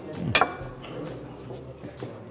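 A single clink of cutlery against a china plate, about a third of a second in, as a plate is handled at the table, over the low steady hum of a restaurant dining room.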